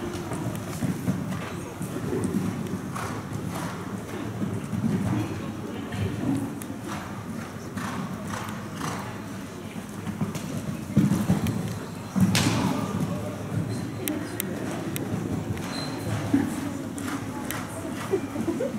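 Hoofbeats of a show jumper cantering on the sand footing of an indoor arena, a run of soft, irregular thuds, with a sharper, louder knock about twelve seconds in.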